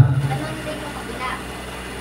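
A man's voice through a microphone trails off at the start, followed by a pause filled with a steady low background hum of the room.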